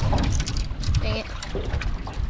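Wind and choppy water around a small flat-bottom boat, heard as a steady low rumble, with a man's brief "Dang it" about a second in.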